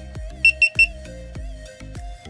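GoPro Hero3+ camera giving three quick, high beeps as it starts its firmware update, over background music.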